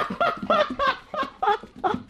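Women laughing: a run of short, quick laughs, about three a second, fading near the end.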